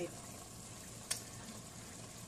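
Pot of tomato-and-pepper cow skin stew simmering steadily on a gas stove, with one sharp click about a second in.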